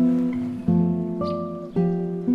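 Classical guitar playing a slow piece, chords plucked and left to ring, with a new chord struck about a third of the way in and another near the end.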